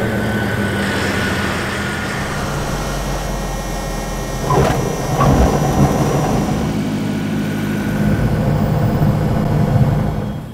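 Single-engine training airplane's piston engine and propeller running steadily, with a few short knocks and a brief chirp about halfway through.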